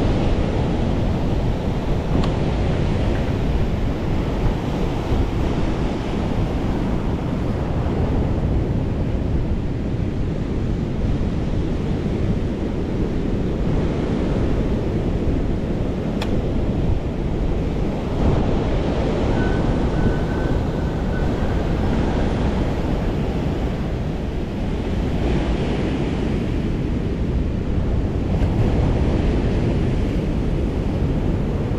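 Steady rush of ocean surf breaking against a rock seawall at high tide, mixed with wind buffeting the microphone of a moving bike camera.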